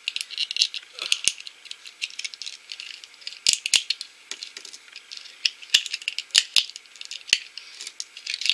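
Thin plastic shell of a Hatchimals CollEGGtibles toy egg being cracked and peeled off by hand: irregular crackles and sharp snaps, close up.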